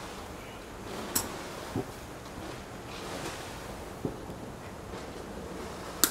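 Quiet rustling and small clicks as bark is pulled back from a yew branch to make a jin, with a sharp click about a second in.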